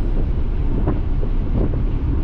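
Nissan 300ZX on the move: a steady low rumble of road and wind noise, with wind buffeting the microphone.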